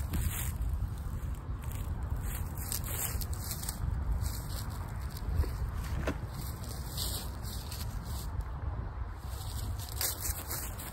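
Wind buffeting the microphone in a steady low rumble, with faint scattered footsteps and rustles on grass and dry leaves.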